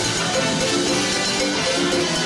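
Salsa band playing live: dense Latin percussion under held notes from the brass and bass.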